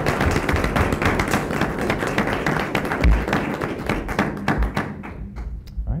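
Audience applauding with dense clapping that dies away about five seconds in, with a low thump about three seconds in.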